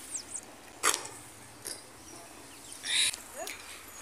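Quiet outdoor air with a few short, high, falling chirps of a small bird at the start, a single knock about a second in, and a brief hiss near three seconds.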